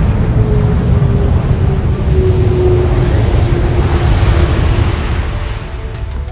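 Jet engines of a Boeing 747-200B (VC-25A Air Force One) at takeoff power as it lifts off: a loud, steady rushing roar with a faint engine tone sliding slowly lower as the plane passes, easing off near the end.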